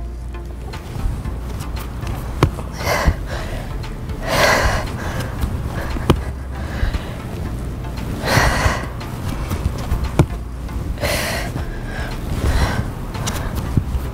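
Background workout music with a steady beat. Over it come heavy breaths every few seconds from a person exercising.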